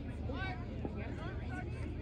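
Indistinct voices of several people talking at a distance, over a steady low rumble.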